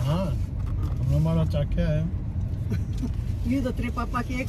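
Steady low rumble of a car being driven, heard from inside the cabin, with people talking over it.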